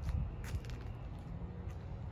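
Faint low rumble with a couple of soft clicks near the start.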